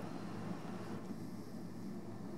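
Steady low background hum with a faint hiss, unchanging throughout and with no distinct sound standing out.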